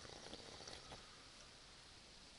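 Near silence, with faint rustling and a few small clicks in the first second.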